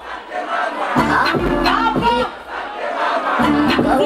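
A concert crowd shouting and singing along over a loud backing beat on the PA. The deep bass drops out and comes back, returning about a second in.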